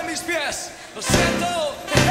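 Live Christian worship music: a lead voice with a bending melodic line, then the full band comes back in hard with a drum hit about a second in.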